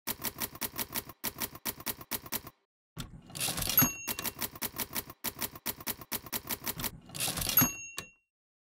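Mechanical typewriter keys striking in quick runs, about six or seven keystrokes a second. Twice, a carriage-return sweep ends in a ringing bell ding, about four seconds in and again near the end.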